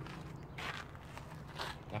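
Footsteps on a paved garden path, about two steps a second, over a faint steady low hum.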